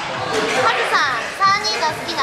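Several women's high-pitched voices talking and laughing excitedly over one another, with music playing in the background.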